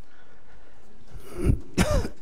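A person clearing their throat: two short rasps near the end, the second one louder and falling in pitch.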